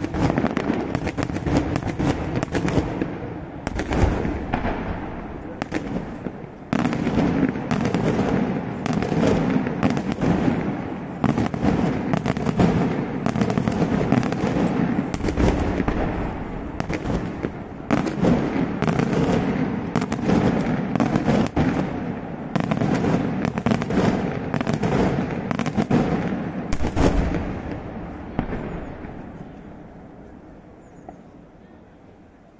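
Daytime fireworks going off in a dense, rapid barrage of bangs and bursts with a few heavier booms among them. The barrage dies away near the end.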